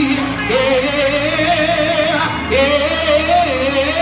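A man singing a gospel song through a microphone, holding two long phrases with a wavering vibrato, the second starting about two and a half seconds in.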